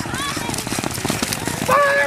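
Galloping racehorses' hooves drumming on a dirt track, under a song's singing voice that holds a run of stepped notes near the end.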